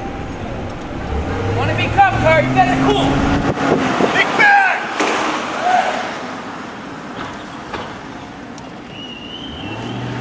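A car's engine hum and road noise heard from inside the moving car. A steady low drone fades out a few seconds in and returns near the end, with indistinct voices over it in the first half.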